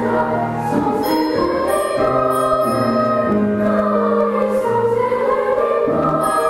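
Children's choir singing in unison and harmony, held notes moving steadily from one to the next, over grand piano accompaniment.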